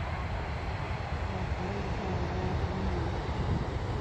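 Wind buffeting the phone's microphone: a steady, gusty low rumble with some faint higher sounds over it.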